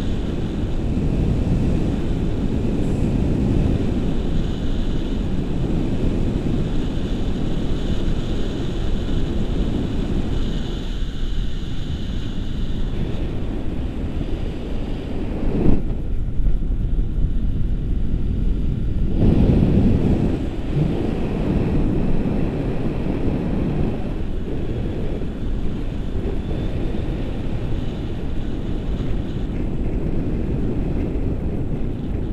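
Wind rushing over the microphone of an action camera on a tandem paraglider in flight: a steady, low, buffeting rumble. About halfway through the higher hiss drops away for a few seconds while the rumble goes on.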